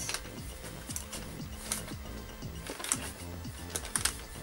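Faint music with light clicks and taps from hands turning a small portable speaker and handling its case.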